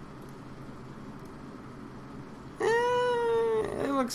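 A cat meowing once, a single drawn-out call of about a second near the end, over a faint steady hum.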